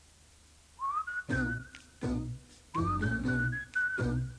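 Advertising jingle with a whistled melody over a low, bouncy beat. It starts about a second in: the whistle slides up to a held note, and the same phrase repeats about two seconds later.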